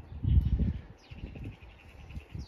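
A small garden bird calling: a rapid, even run of high notes, about a dozen a second, starting about a second in. It follows a brief low rumble near the start, which is the loudest sound.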